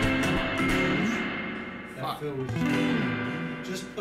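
Guitar playing a slow line of notes and chords that steps downward, the drum kit having just dropped out.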